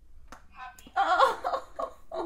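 Recordable pet talk buttons clicking twice as a cat presses them, then a button's small speaker playing a recorded voice saying "happy".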